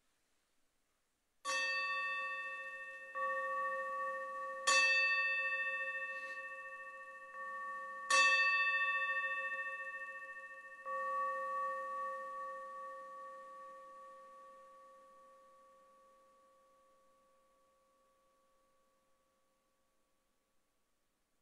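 An altar bell is struck repeatedly by the server, three strong strokes about three seconds apart with softer ones between, each giving one clear ringing tone that then dies away slowly over several seconds. It is rung at the elevation of the consecrated host.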